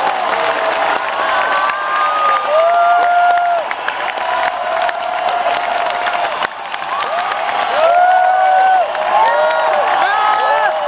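Large concert crowd cheering and applauding, with many voices whooping in drawn-out shouts that rise and fall in pitch.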